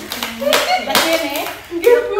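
A few sharp hand claps among women's excited voices.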